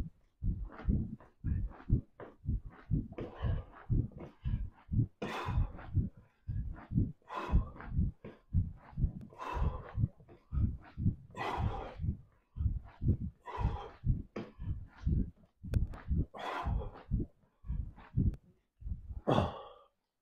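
A man breathing hard through a set of crunches, a forceful breathy exhale about every two seconds, over a quick run of short, soft low thumps.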